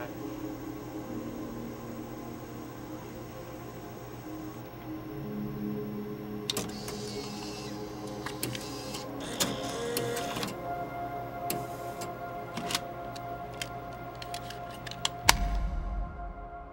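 Videotape deck's mechanism whirring twice and clicking as it stops and ejects a cassette, followed by sharp plastic clicks of the cassette being handled. The loudest click, with a low thump, comes near the end, over a soft music bed.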